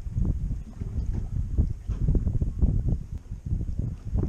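Wind buffeting the microphone on an open boat deck: a loud, irregular low rumble broken by short knocks.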